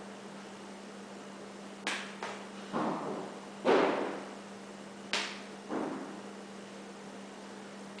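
Spinning poi swishing through the air: six quick swooshes at uneven intervals, from about two seconds in to about six seconds in, the loudest near the middle.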